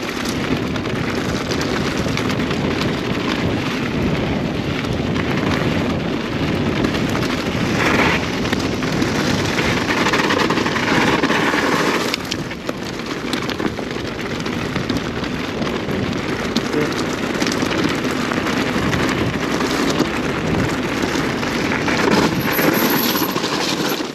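Wind rushing over the rider's camera microphone together with the tyre and frame rattle of an e-mountain bike ridden fast over rough ground. It is a loud, steady noise that swells a little in the middle.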